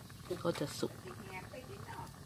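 A woman speaks a few soft words over a faint, steady background of water boiling in a lidded wok on a wood fire.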